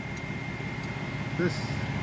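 Turbocharged car engine idling steadily, with a faint steady high whine over the low hum.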